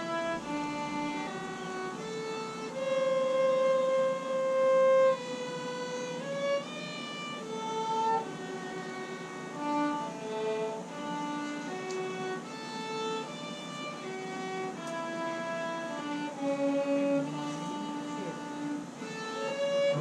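Amateur orchestra playing a melodic piece, violins carrying the tune in held notes over lower strings and brass.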